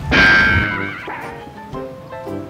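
A horse whinny sound effect, loud at first and falling away within the first second, over background music.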